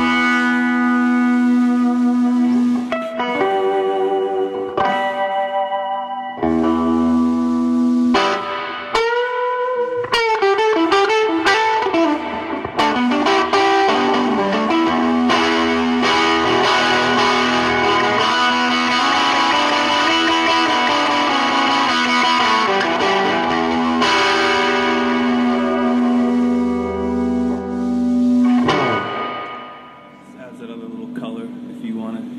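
Epiphone Casino hollow-body electric guitar played loud through a cranked Fender Vibro-King amp with distortion: long sustaining notes with feedback, a bent note about nine seconds in, then a busy run of notes that fades out near the end.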